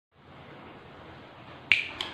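A single sharp finger snap near the end, over a faint steady room hiss.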